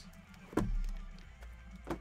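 Two knocks of trading-card boxes handled on a tabletop: a heavier one about half a second in, followed by a low rumble, and a sharp click near the end, over background music.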